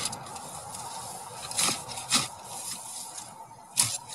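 Spade scraping and chopping into soil as the ground along a fence line is levelled, with a few sharper strikes about one and a half, two and almost four seconds in, over steady background noise.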